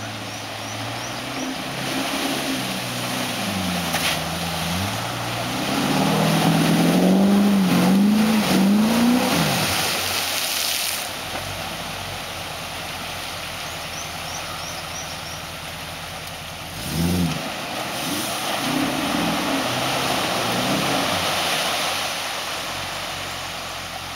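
Classic Range Rover's engine with a deep note, revving up and down repeatedly as it pushes through a deep mud hole, loudest a few seconds before the middle. After that, a steady rush of churning mud and water under the tyres, with one more short burst of revs about two-thirds of the way through.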